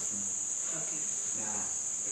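A steady high-pitched whine runs without a break, with faint, quiet speech beneath it.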